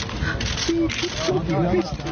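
A woman's voice crying out and sobbing in a wavering, high pitch over the murmur of a large crowd.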